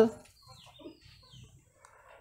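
Faint clucking of a chicken in the background, a few soft calls between about half a second and one second in.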